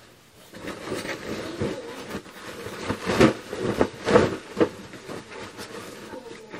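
Bedding rustling and swishing as a duvet and covers are pulled and straightened on a bed. The two loudest swishes come about three and four seconds in.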